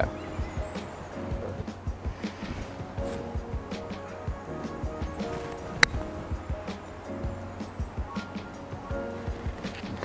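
Background music, with a single sharp click a little past halfway: a 50-degree wedge striking a golf ball from a tight fairway lie, taking a slight divot.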